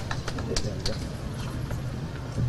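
A few scattered hand claps of welcome that die away within the first second, over low crowd background noise.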